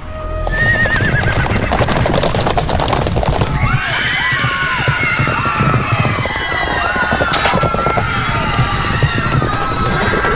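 Film sound of a mounted charge through a crowded street: horses whinnying, the first whinny warbling and falling, over a dense clatter of hooves. From about three and a half seconds in, many overlapping high cries of fleeing people join it.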